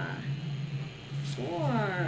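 A person's wordless vocal sounds: pitched, sliding calls that swoop down and back up, one trailing off at the start and another beginning about one and a half seconds in.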